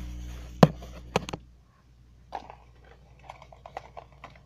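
Hands handling a small necklace box: a few sharp clicks and taps in the first second and a half, then faint crinkling and small clicks. A low background hum cuts off a little before halfway.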